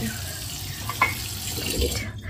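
Water running steadily from a kitchen tap into a sink.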